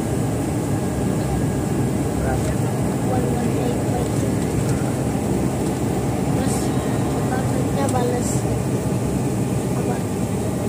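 Steady roar of jet engines and rushing air inside the cabin of a jet airliner in its climb after takeoff.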